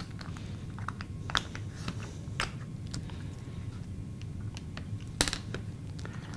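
Light, irregular clicks and taps of a plastic template guide and cutting blade being moved and pressed against poster board on a cutting mat, as paper strips are cut and scored; one sharper click comes about five seconds in.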